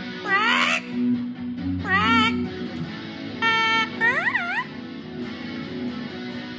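A yellow-headed amazon parrot singing along to an electric guitar. It gives four high calls: three strongly wavering warbles and one held, steady note a little past the middle, over the guitar's sustained chords.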